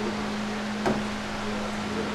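Large floor drum fan running steadily, a motor hum under an even rush of air, with one short knock about a second in.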